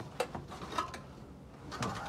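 A few faint knocks and scuffs of objects being moved by hand.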